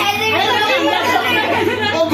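Several people talking at once in overlapping chatter, with a steady low hum underneath.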